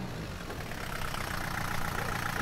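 Willys jeep engine running at low speed as the jeep rolls slowly forward over a dirt yard.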